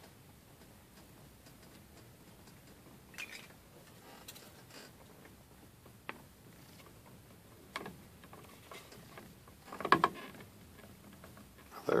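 Quiet handling of 3D-printed PLA plastic parts: a few small clicks and rubs as the upright is worked into the glued pocket of its base, then a louder plastic knock and scrape about ten seconds in as it slides into place.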